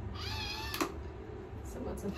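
A single cat meow, one arching call lasting under a second, followed straight away by a sharp click.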